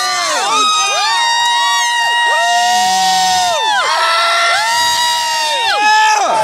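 Spectators cheering, with several voices holding long, high-pitched screams that overlap one after another.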